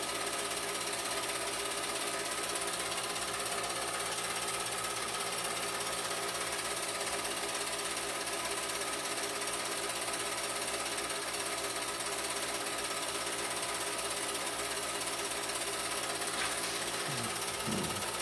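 Home movie projector running: a steady, even mechanical chatter and whir from the film-advance mechanism.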